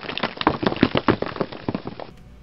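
A crackling sound effect: dense, irregular crackles and pops that stop just after the title finishes forming.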